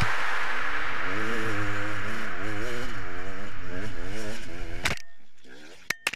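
Enduro dirt-bike engine revving up and down over and over, fading out about five seconds in, followed by a few sharp clicks.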